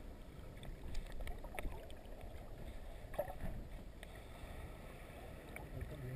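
Muffled underwater ambience heard just below the surface of shallow sea water: a faint, steady low rumble of moving water with a few faint scattered ticks.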